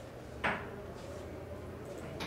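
A single short knock about half a second in, over the steady low hum of a room.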